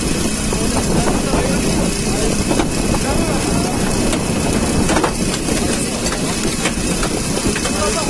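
An engine running steadily under overlapping, indistinct voices of rescue workers, with a couple of short knocks.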